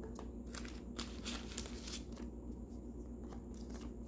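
Thin clear plastic card sleeve crinkling in a run of quick crackles as a gold-plated framed trading card is slid out of it, fading to a few faint rustles after about two seconds.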